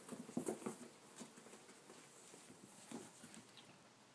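Soft thumps and scuffling of two kittens tussling in and on a cube made of foam floor mats, with a cluster of bumps in the first second and a few scattered ones later.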